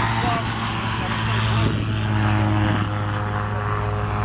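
Small piston engine of a homemade micro helicopter running steadily at idle, with its rotor turning slowly.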